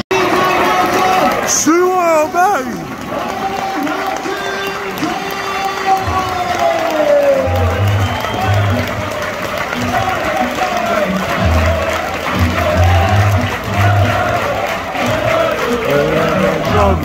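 Music playing loud over a football stadium's public-address system, with crowd noise beneath it; deep bass notes come in about halfway.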